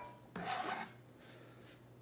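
A short scrape, about half a second long, as chopped rosemary is wiped off a kitchen knife's blade.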